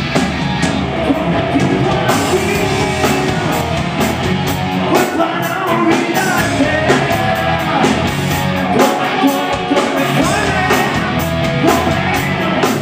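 Live rock band playing a song at a steady level: electric guitars and drum kit, with a man singing lead into the microphone.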